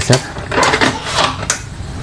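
Plastic top housing of an Epson L3110 printer being shifted side to side and pressed down onto the chassis as it is closed: plastic scraping and rattling, ending in one sharp click about a second and a half in.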